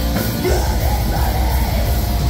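A heavy metal band playing live: distorted electric guitar, bass guitar and drums, with the singer yelling a line into the microphone from about half a second in.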